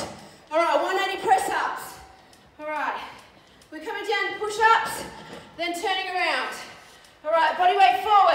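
Speech only: a woman's voice in short phrases about a second long, each falling in pitch, with brief gaps between them.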